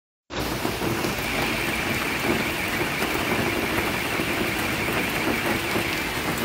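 Steady rain falling, an even hiss of rain on the surfaces around.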